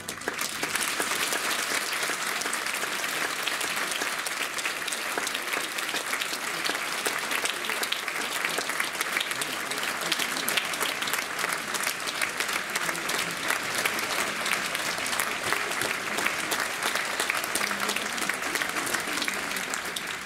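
Theatre audience applauding: dense, steady clapping from a large crowd that goes on without letting up.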